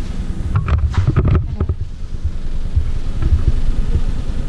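Handling noise on the camera's microphone as the camera is moved: a steady low rumble, with a cluster of rustles and knocks from about half a second to two seconds in.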